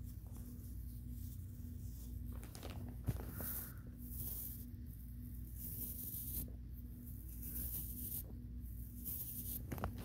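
Short bursts of scratchy rustling, about eight of them at irregular intervals, from a pale paper-like item being rubbed and handled close to the microphone. A faint steady low hum runs underneath.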